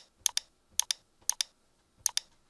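Short sharp clicks in quick pairs, about one pair every half second, as a word is handwritten letter by letter on a digital whiteboard.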